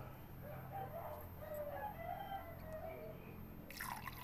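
Yellow-sided green-cheeked conure chick making a series of faint, short chirping calls, followed near the end by a brief rustling noise.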